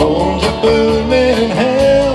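A rock band playing live: an electric guitar line with bending, sustained notes over bass guitar and a steady drum beat.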